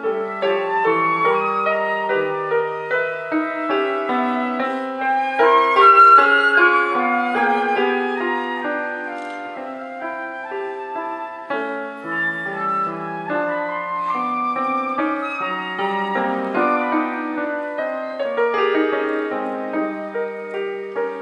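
Concert flute playing a classical solo melody over piano accompaniment, loudest about six seconds in.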